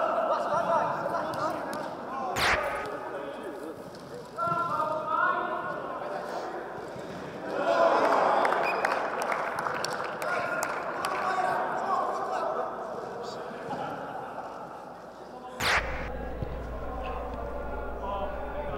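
Men's indistinct shouts and chatter in a large echoing indoor hall during a game of football, with two sharp thuds of a football being kicked, one a couple of seconds in and one near the end.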